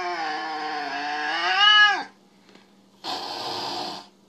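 A cat's long, drawn-out complaining yowl that rises in pitch at its end and breaks off about two seconds in, from a cat its owner says is still mad at her. After a short silence comes about a second of breathy, hiss-like noise.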